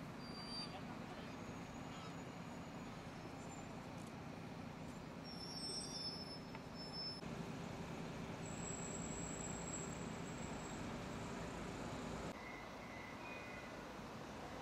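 Outdoor city ambience: a steady low hum of traffic with indistinct voices and a few short bird chirps. The background changes abruptly twice, about seven and twelve seconds in.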